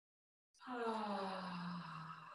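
A woman's long voiced "haaa" breathed out through the mouth, the "ha" exhale of a yoga breathing exercise. It starts about half a second in, falls slowly in pitch and trails off into breath.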